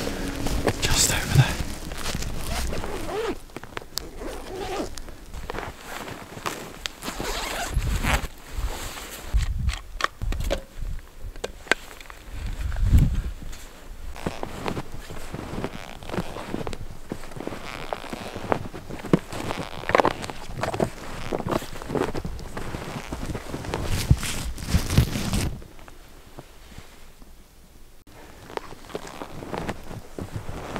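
A camera backpack being unzipped and gear handled: zipper runs, fabric rustling and scattered clicks and knocks as a telephoto lens is taken out.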